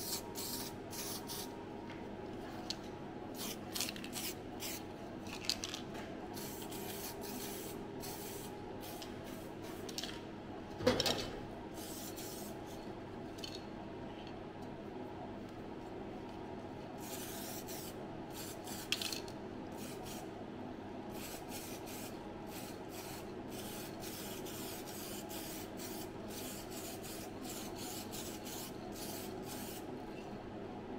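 Aerosol can of copper weld-through primer being sprayed in many short, irregular hissing bursts over a steady low hum, with one louder knock about eleven seconds in.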